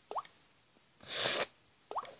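A sniff through a nose stuffy from a head cold, about half a second long, with a brief rising pop at the start and another near the end.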